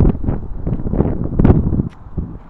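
Wind buffeting the microphone in rough gusts, loudest at the start and again about one and a half seconds in, then dropping away near the end.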